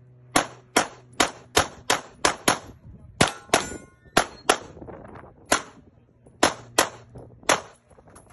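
CZ SP-01 pistol firing a fast string of about fifteen shots, mostly in quick pairs, each a sharp crack with a short ringing tail.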